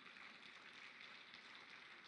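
Near silence: faint, steady hiss of room tone.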